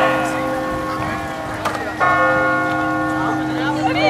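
A bell ringing: struck about halfway through, each strike sounding a chord of several steady tones that rings on, with the previous strike still ringing at the start. Voices chatter underneath.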